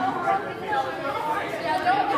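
Overlapping chatter of a group of children and adults talking at once, with no single clear voice.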